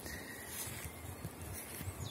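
Faint, steady hum of honeybees over an opened hive.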